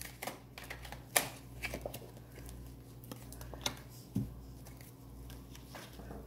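A deck of tarot cards being shuffled by hand: quiet, irregular soft clicks and rustling of the cards.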